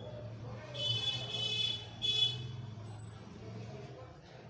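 A vehicle horn honks twice: a honk of about a second, then a shorter one, over a steady low hum.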